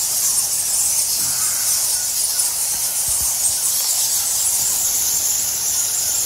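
A large colony of bats roosting on a cave ceiling, giving a dense, continuous high-pitched chatter of squeaks that blends into a steady hiss.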